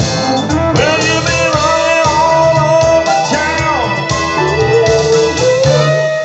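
Live band playing an instrumental break, led by an electric guitar playing sustained, bent notes over bass and drums.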